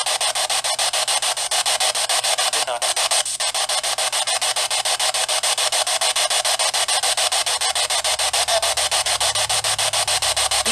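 Choppy static hiss from a small handheld portable speaker, pulsing rapidly and evenly many times a second, like a radio sweep: the noise an EVP session listens through for spirit replies.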